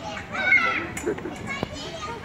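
Children playing and calling out on playground swings, with a high child's shout the loudest sound about half a second in and a sharp click about a second and a half in.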